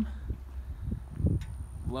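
Wind rumbling on the microphone with a few soft, uneven thumps and a single click. A faint, steady high whine comes in about halfway.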